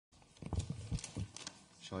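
A quick run of irregular knocks and bumps close to a table microphone, handling noise from papers and hands on the witness table. A man's voice begins just at the end.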